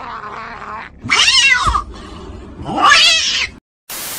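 A man yowling in imitation of a cat: two long wailing cries, each sliding up and then down in pitch, followed by a short burst of static at the end.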